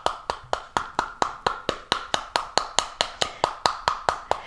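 Small wooden mallet beating the rind of a halved pomegranate in a steady run of sharp taps, about three to four blows a second, knocking the seeds loose into a dish.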